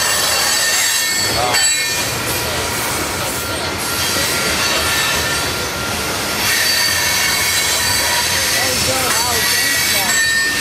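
Coal hopper cars of a freight train rolling past, with a constant rumble of wheels on rail and a steady, high-pitched metallic squeal from the wheels.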